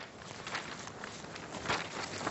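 Footsteps and light shuffling of people moving about, with scattered soft knocks, a little louder near the end.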